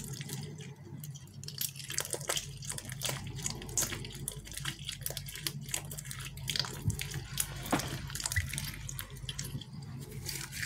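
A soft, fluffy foam squishy squeezed and kneaded in the hands, making a dense, wet squelching with many small crackles throughout.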